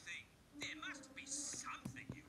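Cartoon character speech played through a TV or tablet speaker and picked up off the screen, with a steady held tone under the second half.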